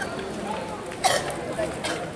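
Pedestrian street ambience with faint voices of people walking past. A short sharp sound comes about a second in, and another near the end.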